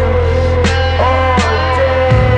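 Instrumental psychedelic post-rock: a held low bass note under sustained electric guitar tones, with a drum hit about every three-quarters of a second.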